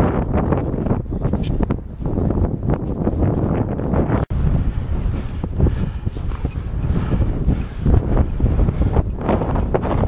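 Wind rumbling on the microphone with irregular crunching footsteps in snow as climbers walk a glacier slope.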